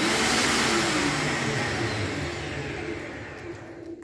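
Small electric hoist motor running loudly with a steady hum, fading away over the last couple of seconds as it stops.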